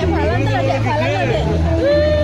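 Loud crowd chatter over music with a steady, stepping bass line, with a long held note near the end.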